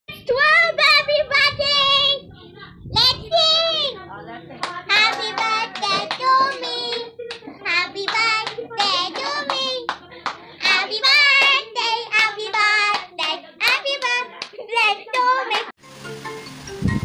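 A young girl singing in a high voice, with some long held notes, close to the microphone. A few short sharp clicks sound among the singing.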